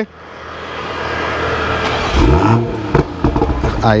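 Toyota GR Supra Mk5's turbocharged straight-six engine running, revved up and back down about two seconds in, followed by a quick blip of the throttle.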